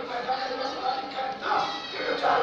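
A man's amplified voice through a microphone and PA in a melodic, drawn-out chanting delivery, with several held notes.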